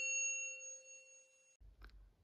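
The ringing tail of a single struck bell-like chime, several clear tones dying away over the first second and a half, then faint room tone.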